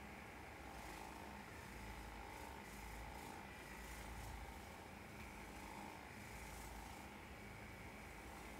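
Quiet room tone: a faint steady hiss with a low hum, and no distinct sounds.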